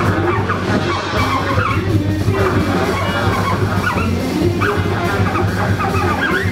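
Live band playing: a saxophone with sliding, bending lines over electric guitar, upright double bass and drum kit.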